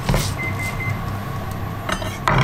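A kitchen knife cutting leafy greens on a bamboo cutting board, with a couple of blade strikes on the board at the start and near the end, over a steady low hum. A short, high electronic beep sounds in three brief pieces about half a second in.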